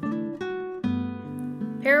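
Background music on acoustic guitar: a few plucked notes struck and left ringing.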